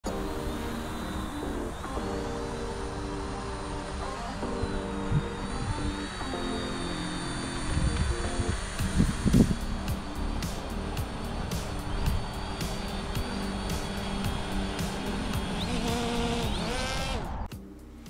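Background music with sustained chords and, from about halfway, a regular ticking beat. Under it runs a steady high whine from the Ameta S20 quadcopter's propellers as it hovers.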